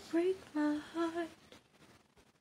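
A girl's voice humming three short notes unaccompanied, the closing notes of a sung melody, then falling silent about a second and a half in.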